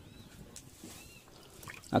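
Faint crackling of a wood fire burning under a clay cooking pot, with a few soft clicks and some faint high chirps.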